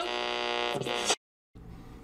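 Intro logo sting ending on a held, buzzy electronic tone that cuts off abruptly about a second in, followed by a faint low hum.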